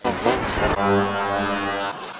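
Cartoon time-card sound effect: a short sound that bends in pitch, then a steady, low horn-like note held for about a second that stops just before the end.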